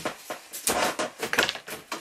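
Black stovepipe sections being pushed and worked back into place, metal scraping and clunking several times in quick succession as the pipe is reseated in its fittings after a chimney cleaning.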